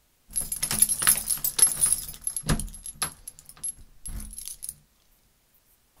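Padlock-and-chains sound effect: a key working a padlock open and metal chain jangling loose. There are a couple of sharp clicks about two and a half and three seconds in, and it stops about five seconds in.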